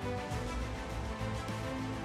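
Background music under a news slideshow: held notes over a steady low bass beat.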